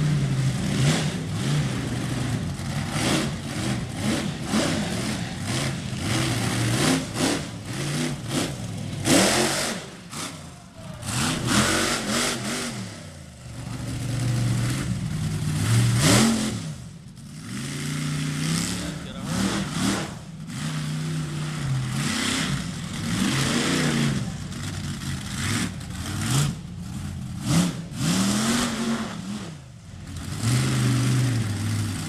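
Monster truck engine revving hard in repeated bursts, its pitch climbing and falling back every few seconds between revs.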